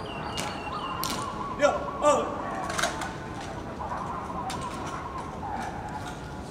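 Ceremonial guard squad marching on wet stone paving: irregular sharp boot strikes, the two loudest at about one and a half and two seconds, as the column comes to a halt.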